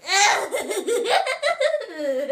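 A young girl's put-on creepy laugh, one long pulsing laugh that starts high and slides down into a deep, drawn-out cackle.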